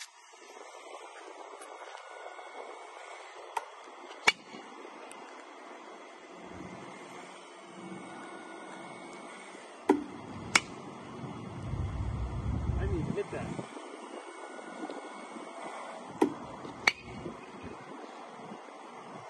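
Batting practice: three times, a sharp crack is followed under a second later by a second crack, each pair about six seconds apart, as a ball is pitched and the bat meets it. A low rumble swells for a second or two in the middle.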